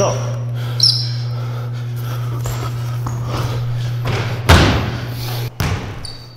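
Basketball being played on a gym court: a short high squeak about a second in, then one loud thump of the ball about four and a half seconds in, over a steady low hum.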